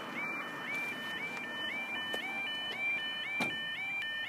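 Level crossing warning alarms sounding: a short rising tone repeated over and over, two alarms overlapping out of step. They warn road users that the barriers are lowering for an approaching train.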